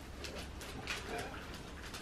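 Faint rustling and crackling of gift wrapping paper as a wrapped present is handled and unwrapped.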